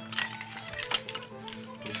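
Ice cubes clinking as they go into a glass mixing glass, a few separate knocks, over steady background music.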